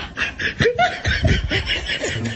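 A person laughing in a run of quick, repeated bursts.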